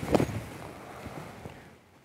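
A 60-degree lob wedge splashing through bunker sand on an explosion shot: a sudden hit at the start, then a soft hiss that fades away over about a second and a half.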